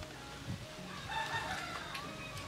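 A rooster crowing once, starting about a second in and lasting about a second.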